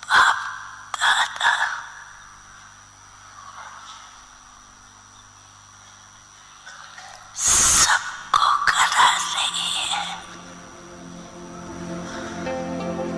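A person's breathy gasps or exhalations close to a microphone: two short ones at the start and about a second in, then a louder cluster about seven and a half seconds in. Soft music fades in near the end.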